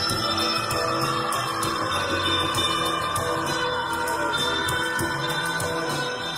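Live psychedelic music: long held, droning tones with a quick, steady ticking pulse over them.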